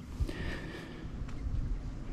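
Quiet outdoor background noise: an uneven low rumble, with a faint thin high tone for about half a second near the start.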